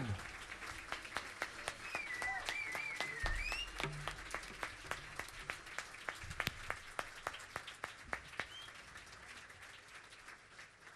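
Concert audience applauding, the clapping gradually thinning out and fading, with a brief cheer from the crowd a few seconds in.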